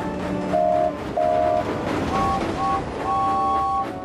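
Two cartoon steam-engine whistles sounding over background music: two short toots, then three higher toots, the last held longer.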